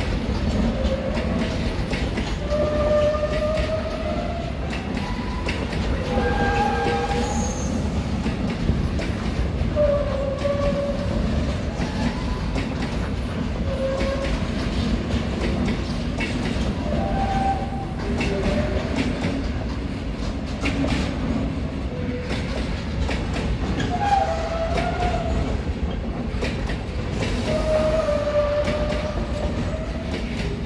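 Container freight train's wagons rolling past: a steady low rumble with clicking of the wheels over rail joints, and about a dozen short squeals from the wheels scattered through it.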